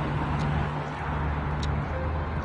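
Street traffic: a steady low engine hum with a light hiss, with two faint ticks.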